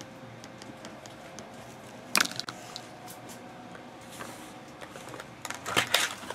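Quiet room with a faint steady hum and scattered light clicks, and one brief sharp rustle about two seconds in. Near the end, hands pick up and handle small cardboard trading-card boxes on a tabletop, giving a quick run of clicks and taps.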